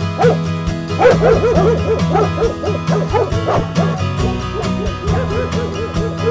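Music with a steady beat, with dog barks and yips mixed in over it, coming in quick runs through the first half and again near the end.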